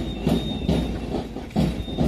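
A steady march beat: low drum thumps about twice a second, keeping time for a march past.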